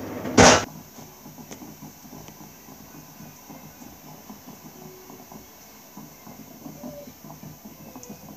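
A short, loud burst of handling noise about half a second in as the phone camera is moved, then quiet kitchen room noise with a faint steady hiss.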